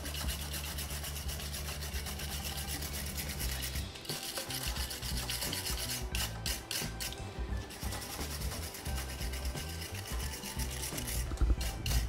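A wire brush scrubbed back and forth over the threaded steel axle of an electric scooter hub motor, clearing out thread debris. It makes a scratchy rasping in repeated quick strokes, with faster bursts of strokes about halfway through and near the end.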